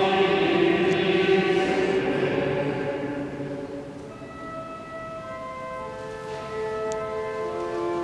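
Choir singing liturgical chant, dying away about four seconds in. Then steady, sustained organ notes begin.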